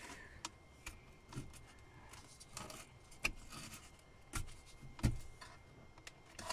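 Hard plastic interior trim being handled by hand, giving scattered light clicks and knocks, the loudest two about four and five seconds in.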